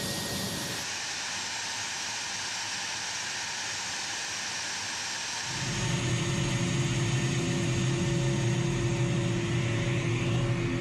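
A-10's General Electric TF34 turbofan engines running on the ground: a steady whine and rush of air, heard close from the open cockpit. About five and a half seconds in, the sound cuts to a louder, lower rumble with a steady hum.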